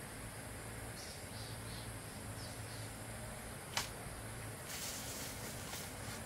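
Footsteps and rustling of someone walking away through bamboo and dry leaf litter, with one sharp snap a little before four seconds in. A few faint high chirps come about a second in.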